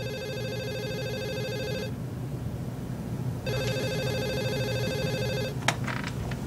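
Corded office desk telephone ringing electronically: two rings about two seconds long, a second and a half apart, followed by a short knock near the end.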